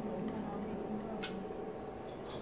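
Dining-room background: faint murmur of voices with a couple of light clicks of tableware.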